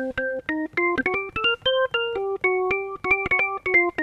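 GarageBand's Hammond organ emulation played as a quick right-hand solo line of short notes that climb for about two seconds and then come back down, each note starting with the percussion's little chime.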